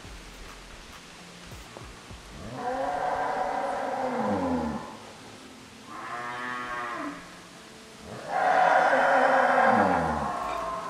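Cows mooing to each other: three long moos, the first a few seconds in and the last and loudest near the end.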